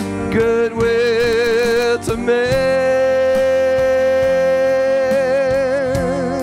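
Live worship band music: a lead line with vibrato over the band, ending in one long held note that wavers near the end.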